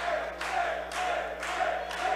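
Wrestling crowd chanting together in a steady rhythm, about two beats a second.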